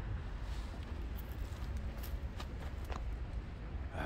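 Outdoor background noise: a steady low rumble, with a few faint clicks scattered through it.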